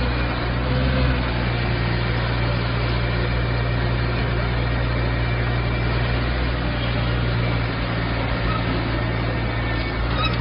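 Iveco tow truck's diesel engine running steadily with a low hum while its crane lifts a car onto the bed.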